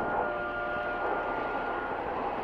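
A steady rushing noise with no clear rhythm, under one high held musical note that lingers from the music and stops near the end.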